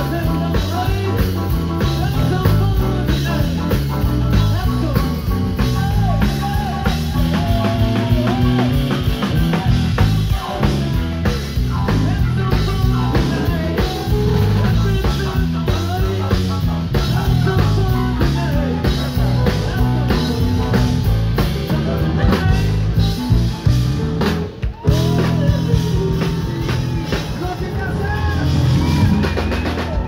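Live rock band playing: drum kit, electric bass and piano, with a male lead vocal. About 25 s in the band stops sharply for a moment, then holds a closing chord that rings out to end the song.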